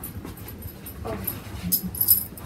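A dog moving about on the floor as it goes down to roll over on command. Light metallic jingling from its chain collar comes in short clicks, mostly near the end.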